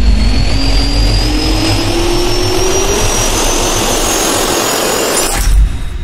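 A rush of noise with a tone climbing steadily in pitch, like a jet-engine riser sound effect. It builds for about five seconds, ends in a brief louder hit and then fades away.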